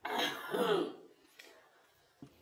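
A woman clears her throat once, a rough burst lasting about a second.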